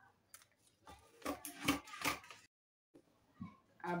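Scissors cutting through a brown paper pattern sheet: about five sharp snips in quick succession, then the sound cuts off suddenly.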